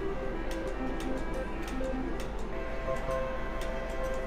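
Five-reel Double Gold stepper slot machine spinning, its reels clicking as they come to a stop, over steady electronic chimes and tones of the slot machines; near the end new held tones come in as a small win is paid out and the credit meter counts up.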